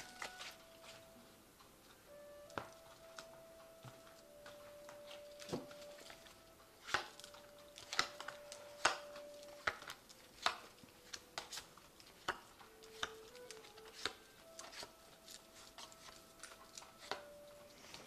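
A deck of tarot cards being handled as cards are shuffled and drawn: faint, scattered light clicks and taps at uneven intervals.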